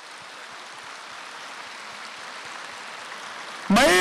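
Large indoor audience applauding: a dense, even patter of many hands that slowly swells. A man's voice cuts in near the end.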